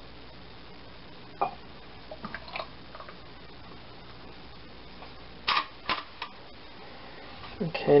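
A glass bowl and a mug being handled on a metal baking sheet: a few light clinks, then three sharp knocks in quick succession a little past halfway, over a steady low room hum.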